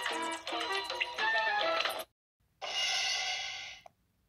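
Children's TV ident music: a melody of short notes that stops about two seconds in. After a brief gap comes a sustained bright chord that fades out just before the end.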